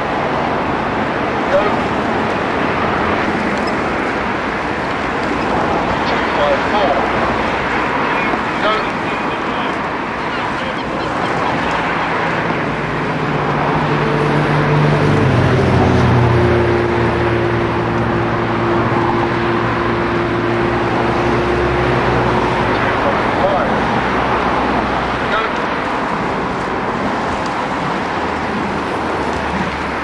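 Steady outdoor noise with an engine passing by: a low hum rises from about a third of the way in, drops in pitch partway through as it goes past, and fades out well before the end.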